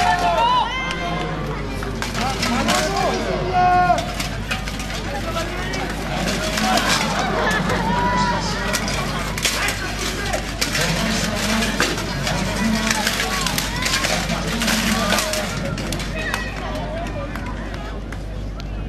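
Spectators' voices and chatter, with many sharp clanks and knocks from armoured fighters' weapons and armour during a medieval reenactment duel.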